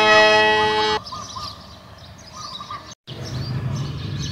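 Organ-like intro music with held chords that cuts off abruptly about a second in. It gives way to faint chirping of small birds, broken by a brief moment of silence just before the end.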